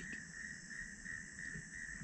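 Crickets trilling in a steady insect chorus, one high unbroken note that holds its pitch throughout.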